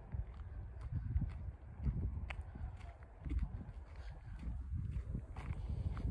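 Footsteps of someone walking on a dirt path, heard as low thuds about once a second over a low rumble.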